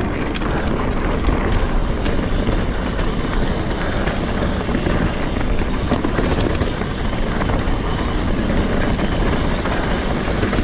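Steady rush of wind on the camera's microphone mixed with the rumble of a mountain bike's Maxxis Minion tyres rolling fast over a dirt forest trail.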